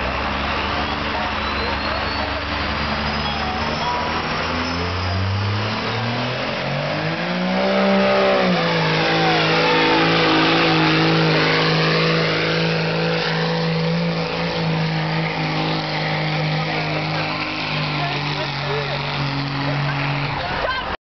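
Dodge Ram diesel pickup pulling a sled at a truck pull. The engine runs low for a few seconds, then revs up hard to full throttle and holds high, steady revs under heavy load. A thin high whistle rises and falls near the start.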